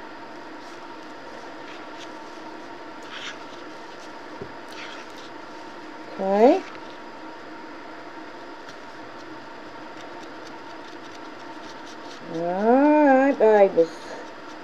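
Steady hum of an air purifier's fan running. Two brief pitched vocal sounds cut across it, a short rising one about six seconds in and a longer wavering one near the end.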